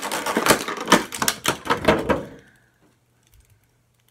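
Clear plastic blister-tray packaging crackling and clicking in quick, irregular snaps as an action figure is worked out of it. The noise stops a little past halfway.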